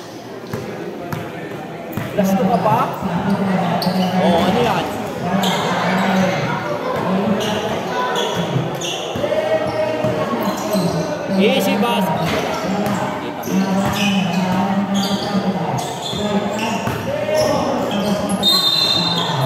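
A basketball being dribbled and bounced on a concrete court during play.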